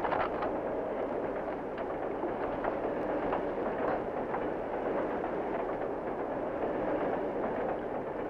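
Passenger train running, heard from inside the car: a steady rumble with a few faint scattered clicks.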